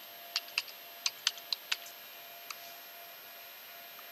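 Computer keyboard keys being typed: about seven quick keystroke clicks in the first two seconds, then one more click about two and a half seconds in.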